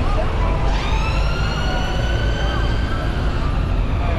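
Busy city road traffic with a steady low rumble; about a second in, a high-pitched whine sweeps sharply up, then holds and creeps slowly higher before fading near the end.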